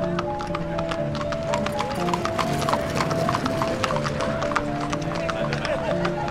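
Horse's hooves clip-clopping on a paved street as a horse-drawn carriage moves along, under a film score of held melodic notes.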